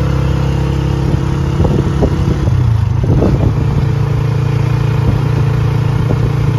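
Motor vehicle engine running at a steady speed, heard loud from on board the moving vehicle, with a few knocks and rattles between about one and a half and three and a half seconds in.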